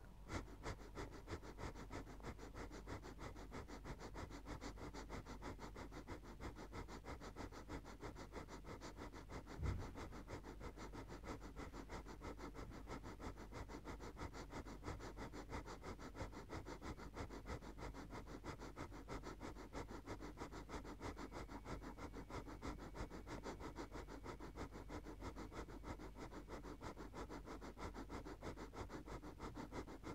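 Breath of fire: rapid, even, forceful breathing through the nose, faint and kept up without a break. One soft thump comes about ten seconds in.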